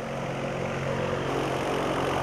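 A steady engine-like machine drone with a low hum, holding level throughout.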